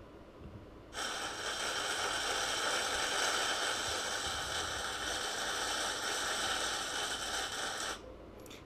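A rain recording (a WAV file) played back: a steady hiss of rainfall that starts about a second in and stops abruptly near the end.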